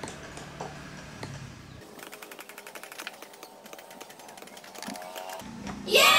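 Rapid, even tapping of a small chisel struck with a mallet, punching the pattern into leather for a shadow puppet. It runs at several strikes a second, starting about two seconds in and stopping shortly before the end.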